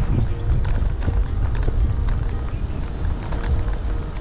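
Wind buffeting an action camera's microphone on a moving bicycle: a loud, deep rumble with scattered light ticks over it.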